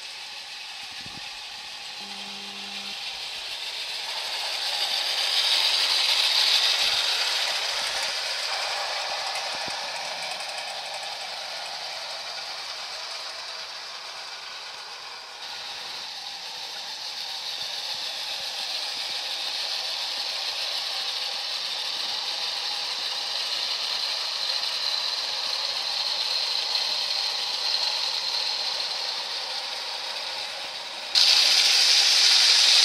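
Bassett-Lowke clockwork 0 gauge Flying Scotsman running with a goods train: the wound-spring motor whirring and the wheels and wagons rattling over the rails in a steady run. It is loudest about six seconds in as the train passes close, changes abruptly about halfway through, and then builds slowly again.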